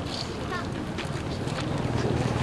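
Low, steady wind rumble on the microphone, with faint voices of the gathered people in the background.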